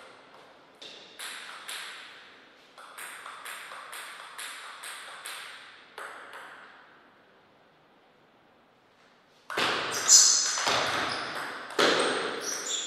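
Table tennis ball bounced repeatedly, short sharp pings about two a second, as it is readied for a serve. After a short pause, louder ball strikes on paddles and table start about nine and a half seconds in as a rally begins.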